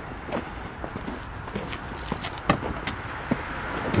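Footsteps of shoes on concrete paving stones: a series of light, irregular steps, with one sharper click about two and a half seconds in.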